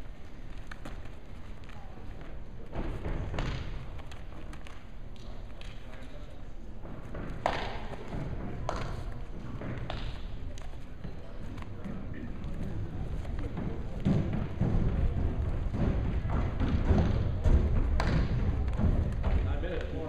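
Bare feet stamping and bodies thudding on wrestling mats as two grapplers hand-fight standing, with scattered sharp slaps, under indistinct voices in a gym. The thuds get louder and more frequent in the last few seconds.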